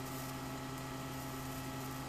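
Steady electrical hum with a hiss over it from a ZVS-driven flyback transformer arcing through the glass of a candle light bulb to its filament.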